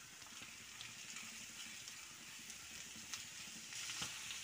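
Diced raw chicken and chopped onions frying faintly in a pan, with a few light knocks and scrapes of a wooden spatula turning them.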